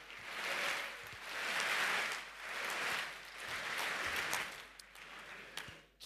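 Audience laughing and applauding, in several swells that fade near the end.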